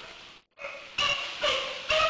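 Sea lions barking: a run of short, pitched barks about two a second, after a brief cut-out of the sound about half a second in.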